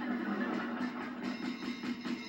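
Television programme soundtrack, dense music-like sound with no words, coming from a 1987 GoldStar CRT television's small built-in speaker. It sounds thin, with almost no bass.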